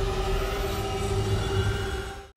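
A held drone chord of dramatic background music: several steady tones over a low rumble, fading near the end.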